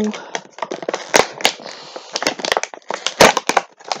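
Clear plastic figure packaging crinkling and clicking as it is handled and opened, a run of irregular sharp clicks and rustles.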